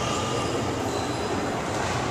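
Steady background din of a large indoor hall, an even rumbling noise with no single distinct event.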